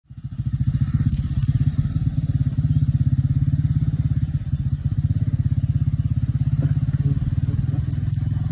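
A nearby engine running steadily at an even speed, a rapid low pulsing with no revving.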